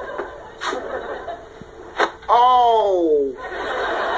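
Studio audience laughter, broken by a sharp knock about two seconds in and then a woman's long wail falling in pitch as she breaks down crying; the laughter swells again near the end.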